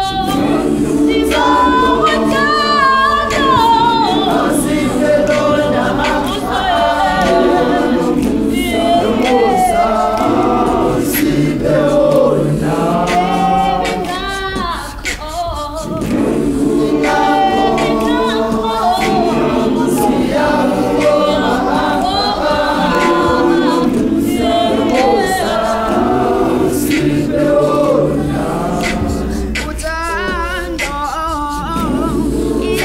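Large gospel choir singing a cappella in full harmony, with a lead voice weaving a wavering line above the chords. The singing eases briefly about halfway through, then returns at full strength.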